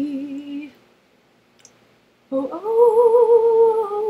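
A woman sings unaccompanied. The last held note of her line trails off under a second in, then there is a short pause. About two and a half seconds in she starts humming a long, wavering note with no words.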